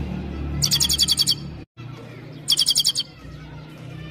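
European goldfinch singing: two quick bursts of rapid, high, trilled notes about two seconds apart, with a brief dropout of all sound between them.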